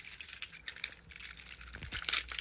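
A bunch of metal keys on a ring jangling and clinking as they are handled and taken off a wall key rack: many small, quick clinks, the loudest at the very start.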